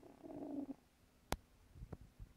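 A sleeping cat over 15 years old snoring: one snoring breath lasting under a second at the start. About halfway through comes a sharp click, the loudest sound, and a fainter click near the end.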